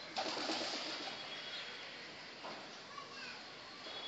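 Domestic pigeons cooing, with a short noisy rustle just after the start.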